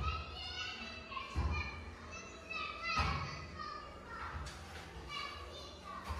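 Children's voices and shouts at play, high-pitched and in short phrases, with a few dull thumps.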